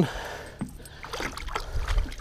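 Lake water sloshing and lapping against the side of a small fishing boat. Wind rumbles on the microphone near the end.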